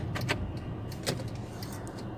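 Car's engine idling, heard inside the cabin as a steady low hum, with a few light clicks and rattles near the start and again about a second in.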